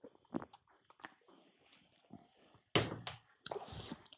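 A man drinking from a can: faint gulps and swallows, then a louder breath out about three seconds in, and a few soft clicks near the end.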